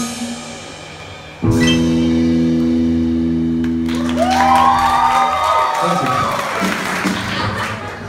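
A live rock band with bass guitar, electric guitar, keyboard and drums ends a song. After a brief dip, a final chord comes in suddenly and rings out for about four seconds, then gives way to whoops and scattered applause from the audience.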